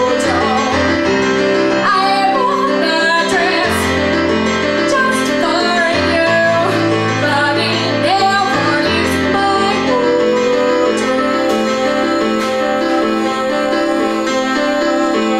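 A woman singing a song live with keyboard accompaniment, the voice held on longer notes in the second half.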